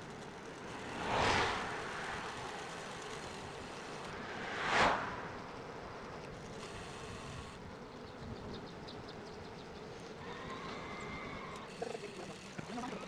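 Road and wind noise from a moving bike, a steady rush that swells sharply three times, with a faint wavering high tone toward the end.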